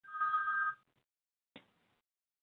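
A short electronic beep made of two steady tones sounding together, lasting under a second, followed by near silence and a faint click.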